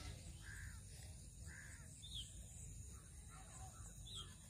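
Faint bird calls: two harsh calls about a second apart, then a run of shorter calls at about three a second near the end.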